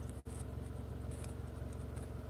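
Faint scratching and tapping of hands handling a phone on a tripod stand, over a steady low hum.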